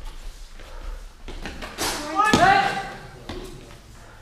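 A sharp knock, then a short, loud shout about two seconds in, echoing in a large sports hall, over a low murmur of voices.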